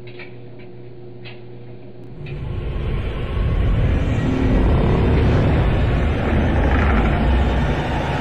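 A low rumble that swells up about two seconds in and then holds, loud and steady.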